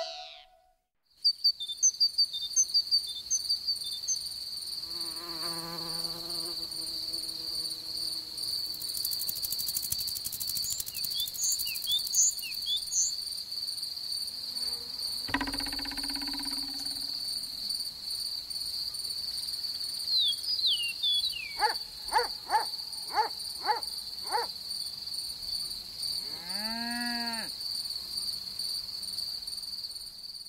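Crickets chirring steadily in a meadow, with short high bird chirps scattered over them and a few brief lower-pitched animal calls.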